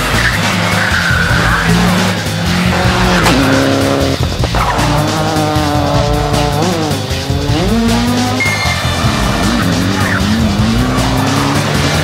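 Rally car engines revving hard at full throttle on a tarmac stage, the pitch climbing and falling back several times with gear changes and corners. Music plays underneath.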